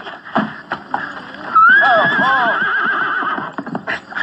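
A horse whinnying from a film soundtrack: a few short knocks, then about a second and a half in one long quavering whinny that wavers down in pitch for over a second.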